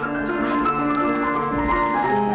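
Piano being improvised on, with several held notes ringing together as the melody moves.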